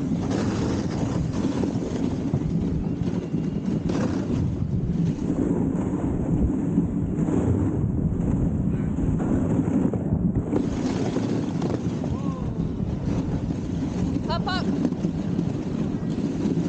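A dog sled moving over snow: a steady rumble of the runners with wind buffeting the microphone. A short high warbling call comes near the end.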